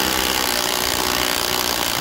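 Metabo cordless impact wrench hammering steadily without a break on the gearbox output flange nut of a BMW E46, working the nut loose.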